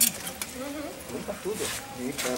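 Faint voices in the background, with a single sharp click of pruning shears snapping shut right at the start.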